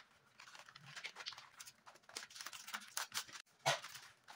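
Gold and pink wrapping paper rustling and crinkling as it is folded and handled, in quick irregular crackles, the loudest one near the end.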